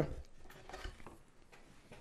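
Faint rustling and light clicks from a cardboard cookie box being handled as a cookie is picked out, over quiet small-room tone.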